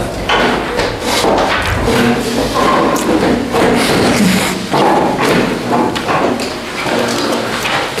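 A man repeatedly blowing and wiping his nose into a cloth handkerchief, a run of noisy blows and sniffs with dull thuds and handkerchief rustling.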